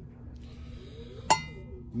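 A single light metallic clink about a second and a quarter in, ringing briefly, as of a small metal part being tapped or knocked.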